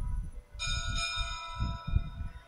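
A bell struck about half a second in, its high ringing tones hanging on and slowly fading; the last of an earlier stroke is still ringing as it begins.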